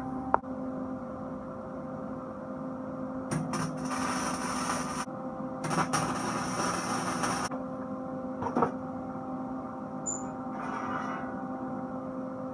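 Electric arc welding on steel plate: two short stretches of arc crackle, about three and a half and six seconds in, each lasting under two seconds, over the steady hum of the welding machine.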